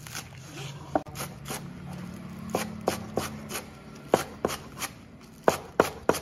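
Kitchen knife chopping green onion leaves into small rings on a plastic cutting board: about a dozen crisp, unevenly spaced knocks of the blade on the board, the loudest near the end.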